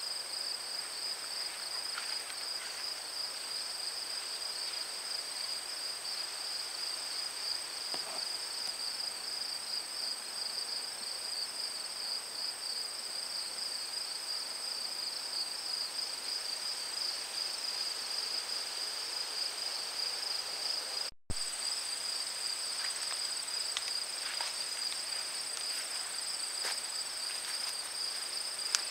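A steady chorus of crickets and other insects: two continuous high-pitched trills, one of them with a fine pulsing, running unbroken except for a momentary cutout about three-quarters of the way through.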